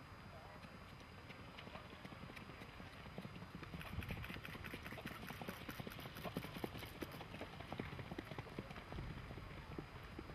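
Icelandic stallion's hooves beating a quick, even rhythm on the sand track, growing louder about four seconds in as the horse comes close.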